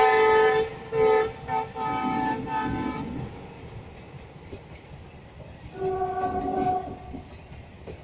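Locomotive horn of an express train running through a station without stopping: a long blast ending about half a second in, then a few short blasts over the next two and a half seconds, and a fainter, lower-pitched horn about six seconds in. Underneath runs the steady running noise of the train on the rails.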